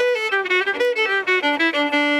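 Solo violin, bowed, playing a quick run of notes that steps downward and settles into a long held note near the end.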